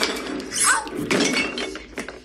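Several objects clattering as they are knocked over, a quick run of knocks and clinks in the first second or so, with a woman crying out "Shit!" partway through, from a TV drama's soundtrack.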